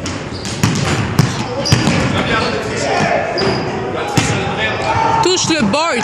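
Basketballs bouncing on a hardwood gym floor in an irregular run of dribbles, echoing in the large hall. A short run of sneaker squeaks on the floor comes near the end.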